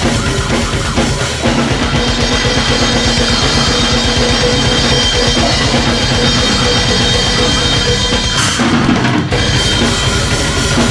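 Acoustic drum kit played fast in slamming brutal death metal style: rapid bass drum strokes under snare hits and cymbals, over the recorded song playing underneath. There is a short break in the cymbals about eight and a half seconds in.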